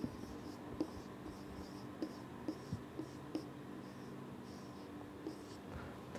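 Marker writing on a whiteboard: faint, short, high scratchy strokes with light taps as the letters are formed, dying away near the end.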